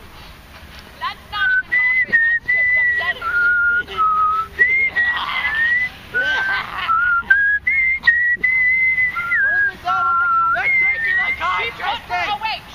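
A person whistling a slow tune: long held notes stepping up and down in pitch, starting about a second in.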